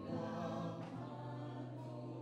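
Gospel worship singing: a male lead singer on a microphone with a group of voices, holding long, slow notes.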